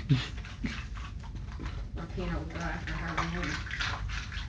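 A dachshund chewing ice on a carpet: a run of short, sharp crunching cracks. A steady, low voice-like tone runs for over a second from about two seconds in.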